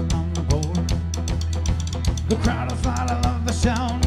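Celtic rock band playing live: a drum kit keeps a steady, busy beat over bass and guitar, with a wavering melody line coming in around the middle.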